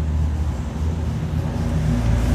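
Low, steady mechanical rumble.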